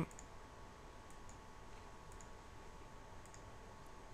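A few faint computer mouse clicks, spread out over the few seconds, over low background hiss and a faint steady hum.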